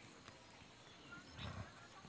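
Near silence with a faint outdoor background, broken by one brief soft thump about one and a half seconds in.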